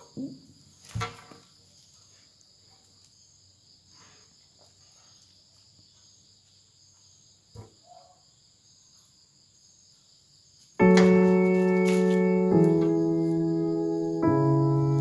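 A quiet stretch with a faint steady high-pitched tone and a few light clicks from handling small craft pieces, then, about eleven seconds in, loud electronic keyboard chords come in, each held for a second or two before changing.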